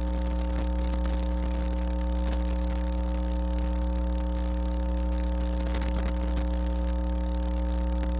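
Steady electrical mains hum in the chamber's sound or broadcast feed: a constant low drone with a few steady higher tones over it, unchanging throughout.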